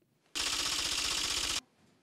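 Typewriter-style clacking sound effect, a rapid even rattle of keystrokes, starting about a third of a second in and cutting off suddenly about a second later.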